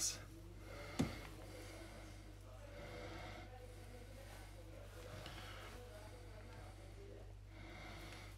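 Faint breathing through the nose, a soft breath every two to three seconds, over a low steady hum, with one sharp tap about a second in.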